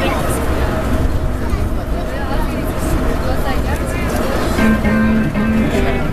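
Airport people-mover train car running, with a steady low rumble and hum, and passengers talking in the crowded car. Near the end comes a short electronic chime of a few held notes that step in pitch.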